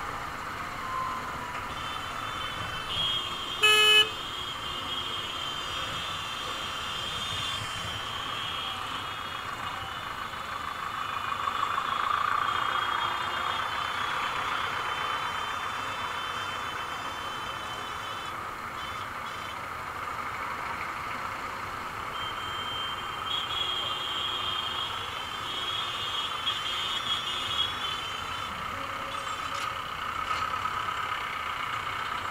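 Dense city traffic heard from a slow-moving motorcycle: a steady wash of engine and road noise, with one short, loud vehicle horn blast about four seconds in. Steady high tones from surrounding vehicles come and go in the background.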